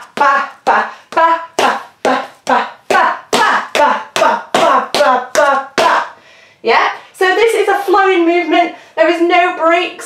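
Metal taps on tap shoes striking a hard floor in a steady rhythm of about three strikes a second, with a woman's voice sounding along. Near the end the strikes give way to her voice.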